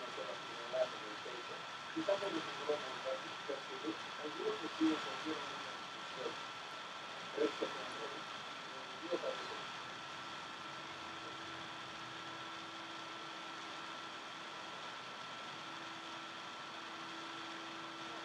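Faint, quiet voices murmuring in the first half, over a thin steady high whine. About halfway through, a low steady hum comes in and holds.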